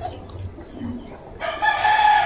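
A rooster crowing: one long crow that starts about one and a half seconds in, rising briefly, then held level.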